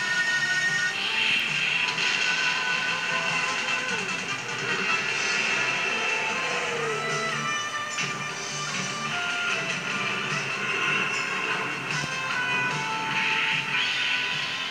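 Soundtrack music from a television broadcast, played through the TV's speaker and picked up across a room.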